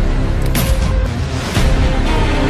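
Soundtrack music with a steady beat of about two strikes a second, and no singing.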